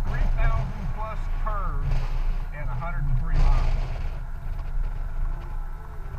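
Wind buffeting the microphone and road noise on a riding Honda Gold Wing GL1800 touring motorcycle, a deep rumble that swells in gusts. A voice is heard over it for the first three and a half seconds.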